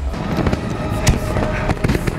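Fireworks crackling and popping, with sharper bangs about a second in and near the end, over a steady held tone.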